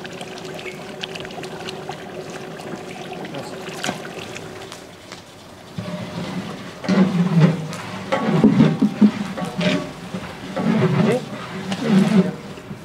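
Wet cooked cattle feed sloshing and being poured between plastic buckets. Voices are talking in the background over the second half.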